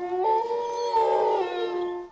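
A long, drawn-out howl: several steady pitched tones held together, stepping up in pitch just after it begins and cutting off sharply after about two seconds.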